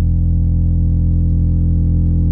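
Electronic dance music at a breakdown: the drums have dropped out and a deep synthesizer bass chord is held steadily.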